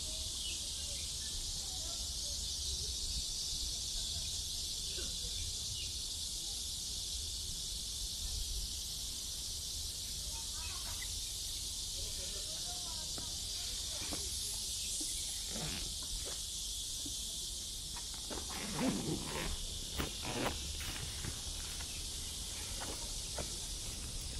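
Steady, high-pitched chorus of summer insects, with a low rumble of wind or handling underneath.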